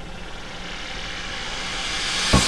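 A whoosh sound effect for a logo animation: a swell of noise that grows steadily louder and brighter, building toward a hit.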